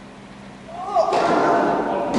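A raised voice, close by, starting loud about a second in, with a sharp knock near the end.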